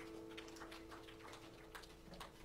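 Near silence as an acoustic guitar's last chord dies away, with faint scattered clicks and ticks.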